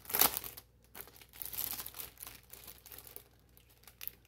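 Clear plastic packaging bag crinkling as it is opened and a planner cover is slid out of it: one loud crackle right at the start, then scattered lighter crinkles that thin out over the second half.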